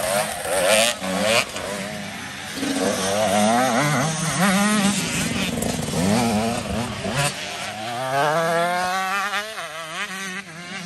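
Off-road dirt bike engines revving up and down as riders work the throttle through a muddy enduro course, the pitch rising and falling every second or so. Near the end, one engine climbs steadily in pitch as it accelerates.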